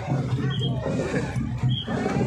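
Street crowd of many people talking and shouting, with two short high peeps about a second apart.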